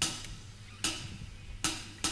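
Drumsticks clicked together three times, evenly about 0.8 s apart: a drummer counting the band in.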